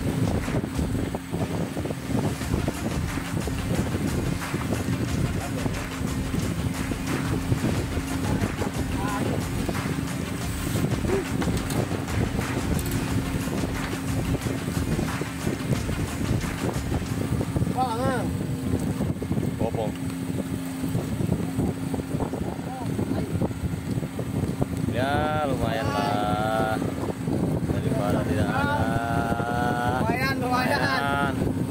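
Fishing boat's onboard engine running with a steady low hum, under a rough rush of wind and sea. Voices call out briefly about 18 seconds in and again near the end.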